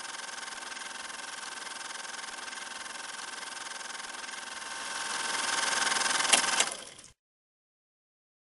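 A steady hissing mechanical running sound with a fast, fine rattle. It grows louder in the last couple of seconds, gives two sharp clicks, then cuts off suddenly.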